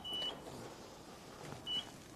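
Two short high electronic beeps, about a second and a half apart, over quiet room tone.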